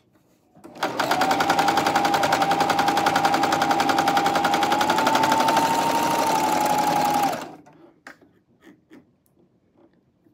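Janome CoverPro 1000CPX coverstitch machine stitching a hem: a fast, even run of needle strokes over a steady motor whine, starting about a second in and stopping after about six seconds. A few faint clicks follow.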